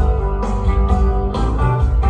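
Live rock band playing: strummed guitars over bass and drums, in an instrumental gap between sung lines.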